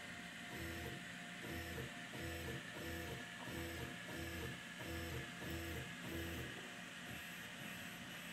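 Stepper motors of a Longer Ray5 laser engraver jogging the laser head in short repeated moves, about two a second, each a brief buzzing tone. The moves stop about six and a half seconds in, leaving a faint steady hum.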